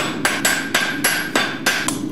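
A forging hammer striking hot iron on an anvil in a fast, even run of blows, about four a second, while the iron is shaped into a hook. A ringing tone carries between the blows.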